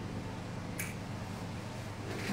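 A single short, sharp click a little under a second in, over a steady background hiss and low hum.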